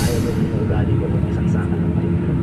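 Rumble of a moving vehicle heard from inside its cabin, with a steady low drone that grows stronger about halfway through. Faint voices sound underneath.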